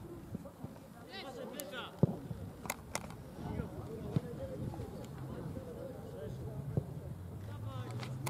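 Football match on a grass pitch: scattered shouts from players and the sideline, with sharp thuds of the ball being kicked, the loudest about two seconds in. A low hum rises in pitch near the end.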